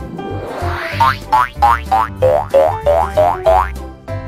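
Children's background music with cartoon boing sound effects: about eight short springy notes that each rise quickly in pitch, roughly three a second, starting about a second in, after a sweeping sound at the start.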